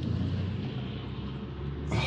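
Car engine idling in a stationary car, heard from inside the cabin as a low steady hum.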